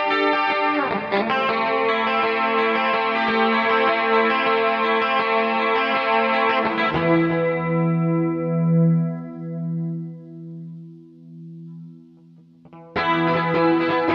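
Instrumental rock music led by electric guitar with chorus and distortion effects. About seven seconds in, the band stops on a held chord that rings out with a wavering pulse and fades away. Near the end the music starts again abruptly at full level.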